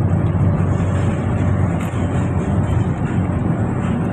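Steady low rumble of road and engine noise inside a moving passenger van's cabin.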